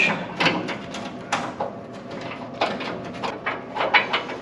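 A wrench working a washer mounting bolt: a string of irregular metal clicks and clinks, several a second, as the tool is set on and turned against the bolt.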